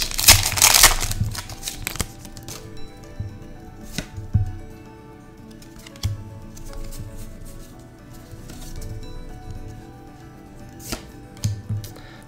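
Foil booster-pack wrapper crinkling and tearing open for the first second or so, followed by soft background music with a few light clicks.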